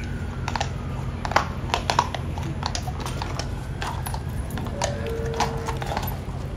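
A horse's hooves knocking on cobblestones in irregular sharp clicks, a few a second, over a steady low background rumble.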